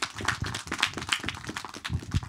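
Audience applauding: many hands clapping at once in a dense, irregular patter.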